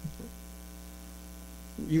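Steady electrical mains hum, a low buzz with a ladder of even overtones, carried through the microphone and sound system. A man's speaking voice comes back in near the end.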